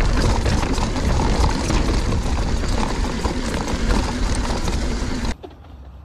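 Mountain bike descending a rocky dirt trail: wind rushing on the microphone over tyre noise, with frequent knocks and rattles as the bike hits the rocks. A little after five seconds it cuts off suddenly to a much quieter outdoor background.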